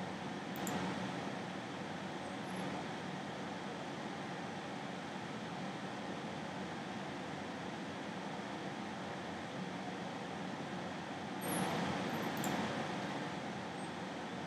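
Steady background hiss of room noise on the microphone, with a few faint clicks about half a second in and again about twelve seconds in, where the noise briefly swells.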